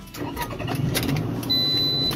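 A 2007 Toyota RAV4's 2.4-litre VVT-i four-cylinder engine being started with the key, catching and settling into a steady run. A high steady electronic warning chime comes in about one and a half seconds in.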